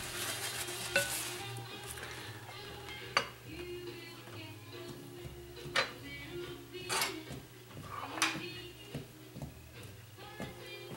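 Wooden spoon stirring stiff cookie dough of butter and egg in a bowl, scraping, with the spoon knocking the bowl's side about five times. The butter is not creaming and stays in lumps.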